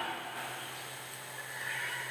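Faint room tone with a low steady hum, no other sound.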